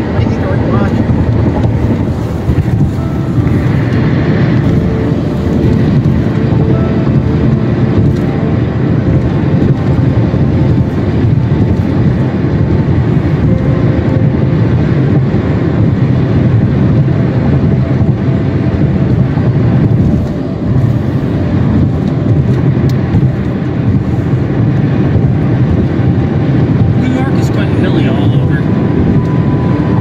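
Steady road noise inside a car cruising at highway speed: a low, continuous hum of tyres and engine heard from the cabin.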